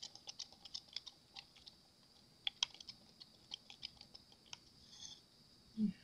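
Stir stick mixing alcohol ink into resin pigment paste in a clear plastic mixing cup: faint, irregular light clicks and scrapes as the stick knocks and drags against the cup wall, several a second.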